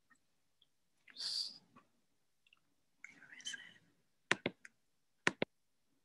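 Two soft breathy exhales, then computer mouse clicks in two quick pairs in the second half, made while trying to get screen sharing to work.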